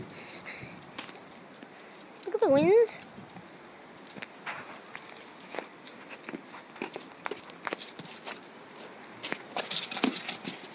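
Footsteps on stone paving slabs: faint, scattered taps. About two and a half seconds in there is one brief vocal sound with a wavering pitch.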